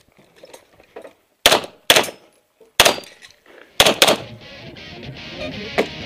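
Five 9mm pistol shots, unevenly spaced, the last two close together, each with a short ringing echo. Music fades in after them.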